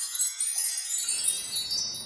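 Magic-spell sound effect: shimmering, tinkling high chimes, with a soft rushing noise joining about half a second in, as a spell opens a hidden door in a wall.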